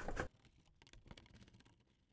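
Near silence with a few faint clicks from a Phillips screwdriver turning a screw out of a car's underbody panel.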